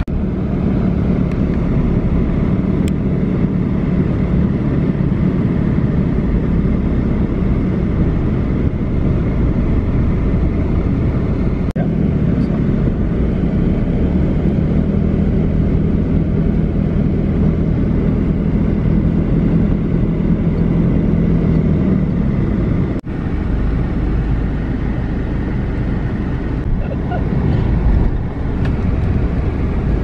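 Steady engine hum and road noise heard from inside an SUV's cabin as it drives slowly through city traffic.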